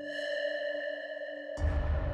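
Dramatic background score: a single held, ringing synth tone, joined by a deep low rumble about one and a half seconds in.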